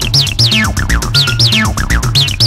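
Acid house music: a Roland TB-303 bass synthesizer line whose resonant filter sweeps many of its notes sharply from high to low, giving the squelching acid sound, over a steady drum-machine beat and bass.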